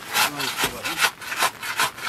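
Wet mud being scraped and dug away from around a car's bogged-down wheel, a quick run of scraping strokes, several a second.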